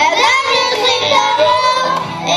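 Young children singing a song together with music.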